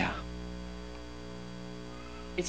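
Steady electrical mains hum from the microphone and sound system, a low buzz made of several even, unchanging tones. The tail of a man's word fades out at the very start.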